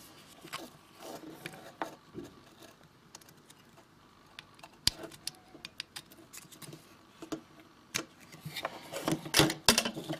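Plastic ribbon-cable connector being pushed by hand onto a Raspberry Pi's GPIO header pins: faint rubbing and handling of plastic, with a few scattered sharp clicks and a quick run of louder clicks near the end as the connector goes on.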